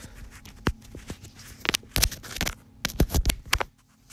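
A phone and its charger cable being handled and plugged in: scrapes and a run of sharp clicks and taps, bunched about two seconds in and again about three seconds in.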